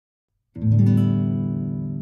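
Background music: complete silence, then about half a second in a single guitar chord is struck and rings, slowly dying away.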